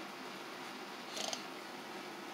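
Faint steady background hiss with a brief, soft rustle of paper being handled about a second in.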